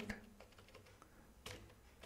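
Near silence with a few faint computer keyboard keystrokes, the clearest about one and a half seconds in.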